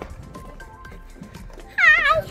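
Upbeat electronic background music with a steady beat. Near the end comes a short, loud, high-pitched squealing cry.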